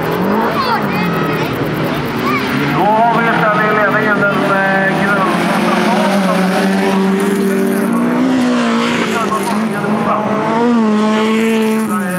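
Several folkrace cars' engines running and revving on a dirt track, their pitch rising and falling as they accelerate and lift.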